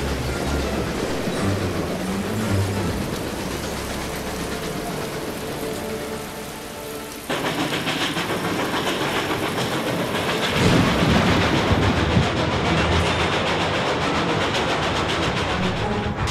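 Sound-effect mix of a steam train running in heavy rain. The sound changes abruptly about seven seconds in, and a louder low rumble comes in about three seconds later.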